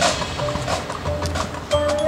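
High school marching band playing: quick clicking percussion strikes over a held note. Fuller sustained wind chords come in near the end.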